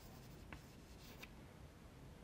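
Chalk writing on a blackboard: a few faint taps and scratches as the chalk strikes and drags across the board, over quiet room hiss.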